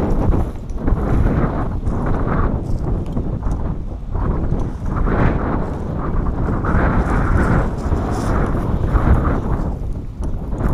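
Strong wind buffeting the microphone: a loud rush heaviest in the bass that surges and eases unevenly.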